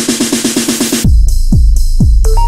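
Minimal deep tech track at 125 BPM. A fast roll of short drum hits, about eight a second, runs until about halfway through. Then the beat drops back in: a heavy kick drum with a falling pitch on every beat, about two a second, with the mids filtered out.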